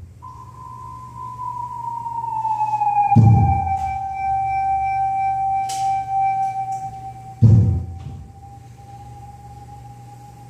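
Free-improvised music: a single held tone slides slowly down in pitch over the first three seconds and then holds steady, under two deep thumps about four seconds apart and a sharp click between them.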